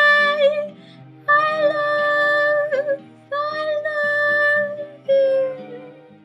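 A woman singing long held notes in four phrases over a soft backing instrumental track, the last phrase fading away near the end as the song closes.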